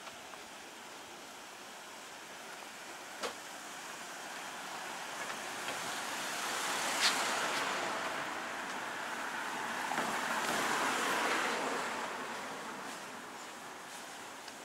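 Car passing along a narrow street, its tyre and engine noise swelling through the middle and fading near the end, with a couple of sharp clicks.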